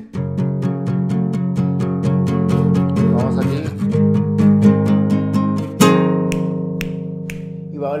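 Acoustic guitar playing a chord progression with quick, even strokes several times a second, moving from F♯ minor to G♯ about three seconds in. A strong stroke near six seconds in is left to ring and fade out.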